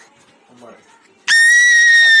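A child's long, very high-pitched squeal held on one steady note, starting a little past halfway and lasting about a second.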